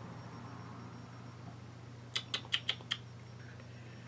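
A quick run of about five light clicks in under a second, a little past halfway, from a small plastic lipstick tube being handled and turned over in the fingers, over a low steady hum.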